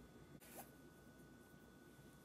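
Near silence: room tone, with one brief faint rustle about half a second in.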